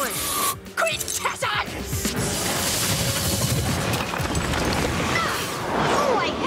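Cartoon battle soundtrack: music under loud sound effects. A few sharp hits and short vocal cries come in the first second or two, then a dense rushing noise from about two seconds in.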